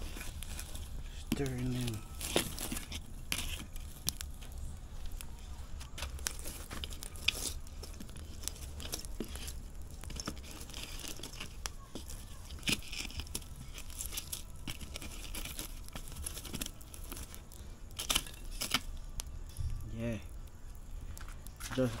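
Wood fire crackling and snapping with scattered sharp pops, as breadfruit roast whole in the embers.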